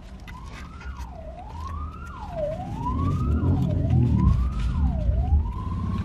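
An emergency vehicle's siren wailing: a tone that rises slowly in pitch and drops quickly, about once every second and a quarter, then settles into a held tone near the end. A low vehicle rumble grows louder through the middle as it comes closer, heard from inside a parked car.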